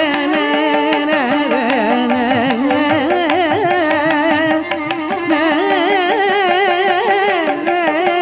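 Carnatic classical music: a woman's voice sings a varnam in raga Charukesi, the melody sliding and wavering in constant ornaments, with drum strokes keeping time beneath.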